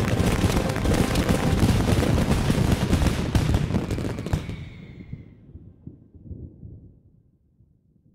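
Fireworks going off in a dense, rapid crackle of bangs, which fades away from about four seconds in to silence by the end.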